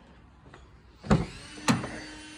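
A car door being opened: the door handle and latch release with two sharp clicks about a second in and half a second apart, followed by a faint steady hum.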